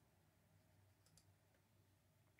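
Near silence, with a few faint, sharp clicks about a second in.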